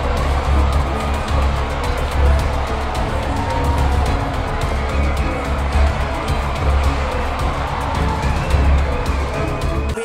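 Background music with a heavy, pulsing bass beat.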